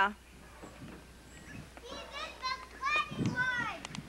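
Children's voices, high-pitched calls and chatter from children playing at a distance, starting about two seconds in.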